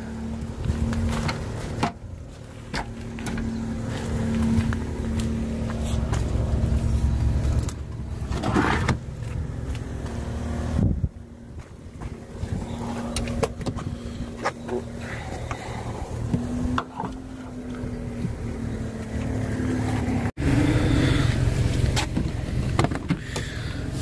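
Clunks, knocks and clatter of tools and gear being handled and lifted out of a car's boot and cabin, over a steady low mechanical hum.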